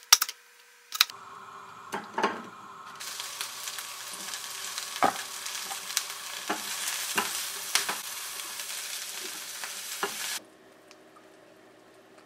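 A knife chops on a plastic cutting board, a few sharp strokes. Then Brussels sprouts sizzle in a frying pan while being stirred, with occasional knocks of the utensil against the pan. The sizzle cuts off suddenly near the end.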